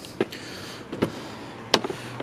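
Three short, light clicks over a faint steady background hiss; the last click, near the end, is the loudest.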